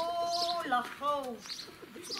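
A small bird chirping over and over, short high chirps about every half second. The loudest sound is a drawn-out pitched vocal call for about the first second, then a shorter one, most likely a person's voice.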